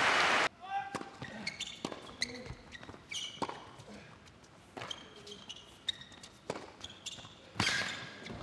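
Crowd applause cuts off in the first half-second, giving way to a tennis rally on an indoor hard court: sharp racket strikes and ball bounces with short shoe squeaks on the court surface over a quiet arena. A louder sharp hit comes near the end.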